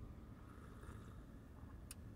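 Near silence inside a car: faint low rumble of cabin room tone, with one small click near the end.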